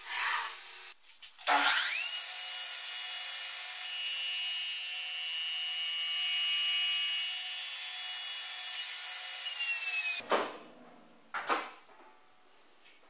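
Table saw starting up about a second and a half in with a rising whine, then running steadily at speed with a high whine. Its blade trims a fresh zero-clearance edge on the plywood sacrificial fence. Near the end the saw is switched off and the sound drops away quickly, leaving a fading rundown with a couple of light knocks.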